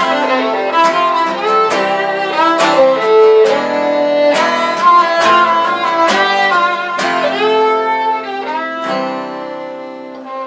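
Fiddle playing a melody over a strummed acoustic guitar in an instrumental passage without singing, getting quieter near the end.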